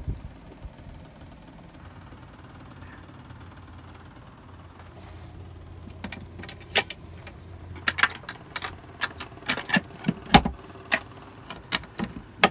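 A thump, then a faint low hum, then a run of knocks and clicks with one heavier thud about ten seconds in: handling and footsteps inside a sailboat's wooden cabin.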